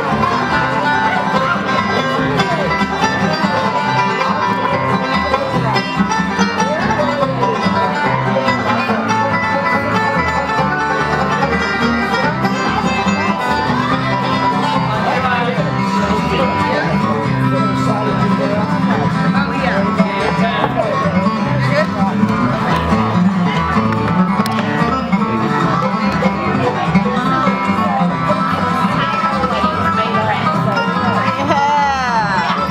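Live bluegrass band playing: two acoustic guitars and a banjo picking fast runs over an upright bass line.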